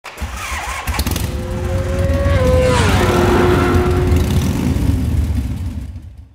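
Motorcycle engine running loud over a deep rumble. Its pitch holds, drops sharply about three seconds in as if the bike is passing by, then steadies lower before fading out at the end.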